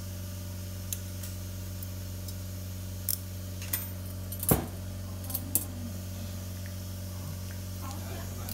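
Metal surgical instruments clinking in short, sharp clicks, about half a dozen, the loudest about halfway through, over a steady low hum.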